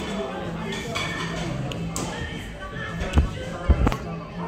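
Background music and a murmur of voices, with two dull thumps near the end, about half a second apart, as the phone filming is handled.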